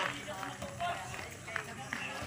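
Sounds of an outdoor basketball game on a concrete court: players' scattered voices calling out, and footsteps of players moving about.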